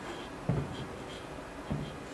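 A soft thump about half a second in and a lighter one near the end, with faint, scratchy ticks between.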